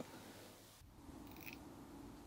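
Near silence: faint room tone, with a faint steady low hum from about a second in.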